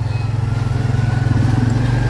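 Tuk-tuk's small engine running close by, a steady low hum that gets slightly louder as it pulls along the street.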